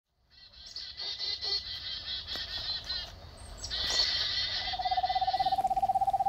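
Birds calling, likely a recorded bird clip: quick high chirping calls come in two runs with a short break near three seconds. A lower, steady pulsing trill joins near the end.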